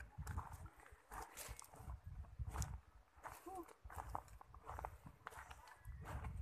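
Footsteps crunching on loose river gravel and stones, an irregular run of short steps.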